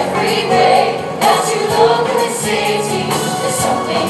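Stage musical ensemble singing as a chorus with instrumental accompaniment.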